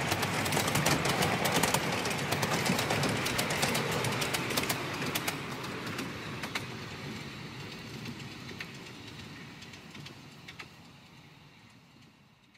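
Carriages of a miniature railway train rattling past, their wheels clicking rapidly over the rail joints, with the clicks thinning out and the sound fading steadily as the train runs away.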